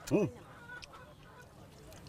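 A man's brief, appreciative hummed "mm" as he tastes the food, one short call rising and falling in pitch right at the start, followed by low background.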